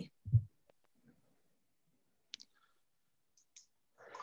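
Near silence, broken by a short low thump just after the start and faint brief clicks about halfway through and near the end.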